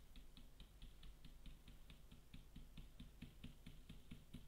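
Faint, rapid tapping of a stencil brush dabbing paint through a stencil onto a plastic pot, about seven light taps a second.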